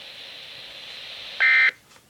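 Weather radio receiver's speaker hissing with dead air, then, about a second and a half in, a short loud burst of the warbling digital SAME data tone that marks an Emergency Alert System end of message. The hiss cuts off right after it as the receiver mutes.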